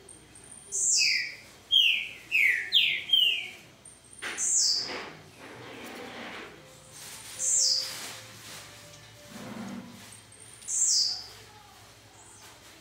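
Caged songbirds chirping with short, high, sharply falling calls: a quick run of about five calls near the start, then single calls roughly every three seconds.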